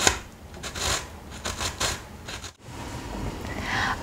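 Irregular scraping and clicking of kitchen utensils at work in cooking. The sound cuts out completely for a moment about two and a half seconds in.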